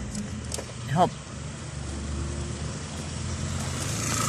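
Steady low engine and road noise of a moving car, heard from inside the cabin, growing a little louder toward the end.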